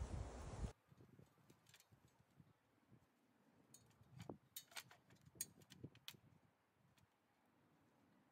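Near silence broken by a scatter of faint, short clicks and knocks, bunched in the middle, from straps being handled on a metal tree-stand frame.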